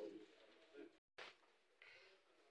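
Near silence: faint room tone of a hall, broken by a brief total dropout in the sound about a second in.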